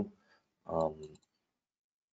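A few faint computer mouse clicks about a second in, over a man's short hesitant 'um'.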